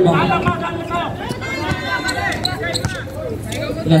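A basketball bouncing on a hard outdoor court during play, with voices around it.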